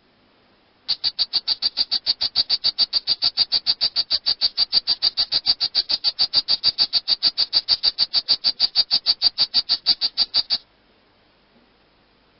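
Frog calling: a long, even trill of high chirps, about six a second. It starts about a second in and stops shortly before the end.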